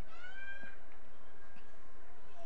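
A single high-pitched shout, rising at the start and then held for under a second, over faint open-field ambience.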